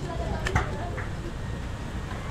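Faint voices talking in the background over a steady low rumble, with a light click about half a second in.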